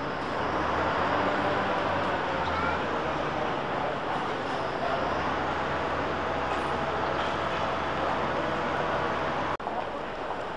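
Street ambience: a steady drone of vehicle noise with a low hum and faint background voices, with a brief break near the end.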